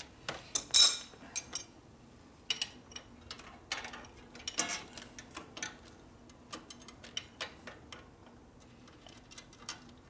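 Irregular metallic clicks and clinks of a small wrench working on a 1974 Harley-Davidson Shovelhead's clutch linkage, loudest in a cluster in the first second and a half, then scattered and sparser.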